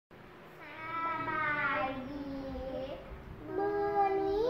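Young girls' voices singing a long drawn-out note that slides down in pitch, then starting a second held note near the end.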